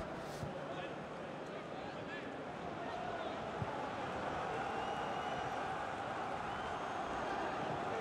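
Steady pitch-side field ambience at a football match with no crowd, a low even hiss with faint distant player shouts and calls on the pitch, and one light knock of a ball being kicked about midway.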